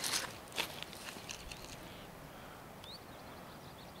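Quiet outdoor background with a few soft footsteps on grass in the first second or so, and one short, faint rising chirp about three seconds in.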